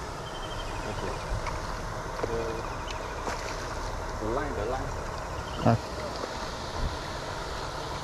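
Water splashing as a hooked fish thrashes at the pond's edge and is drawn into a landing net, over a steady background hiss.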